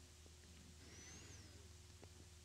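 Near silence: room tone with a steady low hum. About a second in there is one faint, high whistling note that rises and then falls.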